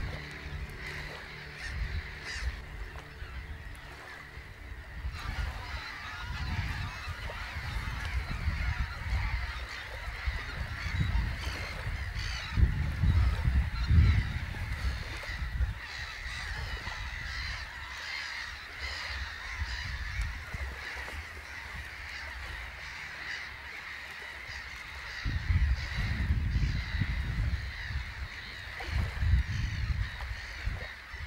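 A flock of geese honking continuously in flight, many calls overlapping. Irregular low rumbles run underneath, strongest about halfway through and again near the end.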